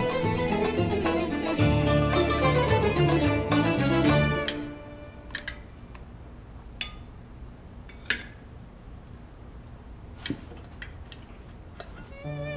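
Plucked-string background music that stops about four and a half seconds in. A quiet stretch follows, broken by a few short, faint clicks.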